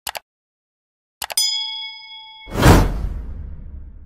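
Subscribe-button animation sound effects: two quick clicks, then a few more clicks and a bell-like ding that rings for about a second. Halfway through, a loud whoosh comes in and fades away.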